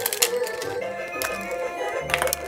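A plastic capsule egg being pried open by hand, its halves giving a few sharp clicks and cracks, over steady background music.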